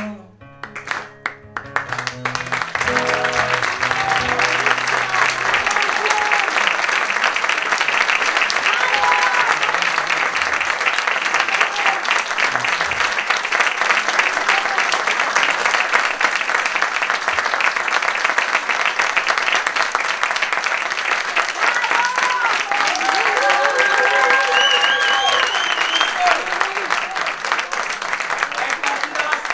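The last strummed chord of an acoustic guitar rings out over the first few seconds as a live audience breaks into sustained applause. Scattered cheering voices rise within the clapping about three quarters of the way through.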